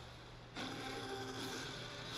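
Faint film-trailer soundtrack playing through computer speakers: a quiet held tone with a few evenly spaced pitches for about a second, over a low steady hum.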